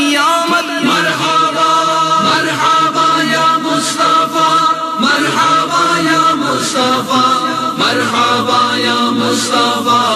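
Voices chanting an Urdu naat (a devotional song in praise of the Prophet) in chorus, with held sung notes and no pause.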